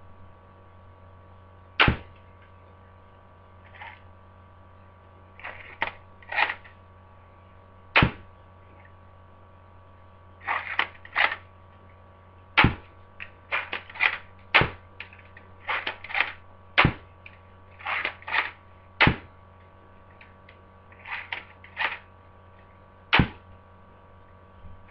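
Lego brick-built HK416 replica gun being worked and fired: a run of sharp plastic clicks and snaps. About seven loud snaps are spread over the stretch, with small clusters of quieter clicks between them.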